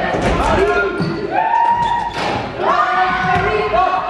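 Basketball game sounds in a sports hall: voices calling out, with long held calls twice, over a basketball bouncing on the court floor.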